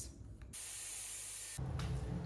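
Hairspray sprayed from an aerosol can in one steady hissing burst of about a second, cut off abruptly.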